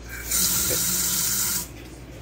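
Tap water running from a kitchen faucet through the dishwasher's quick-connect faucet adapter into a stainless steel sink. It is switched on at the adapter's red button, runs steadily for just over a second and cuts off suddenly.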